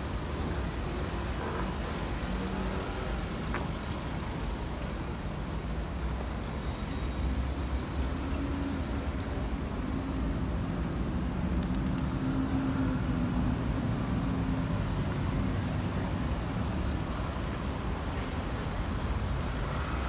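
Steady city road traffic noise, low and continuous, with a faint engine hum in the middle stretch.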